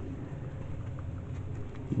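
Quiet, steady outdoor background noise with a low hum and no distinct event, apart from one faint tick about a second in.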